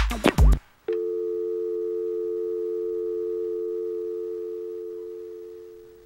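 An electronic music track with a strong beat cuts off about half a second in. Just before one second in, a steady electronic tone like a telephone dial tone begins, holds for about four seconds, and fades away near the end.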